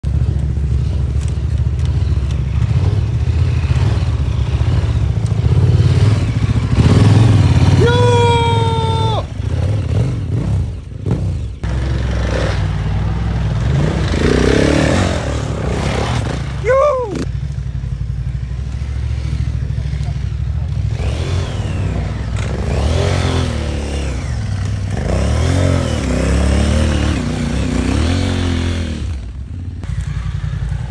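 Dirt bike engines running and revving as the bikes climb over rough forest ground, with people calling out now and then, including one long held call about eight seconds in.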